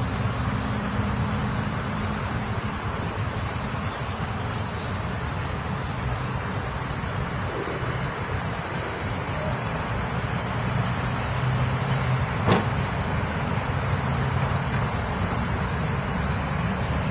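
Steady road traffic noise, with a single sharp click about twelve seconds in.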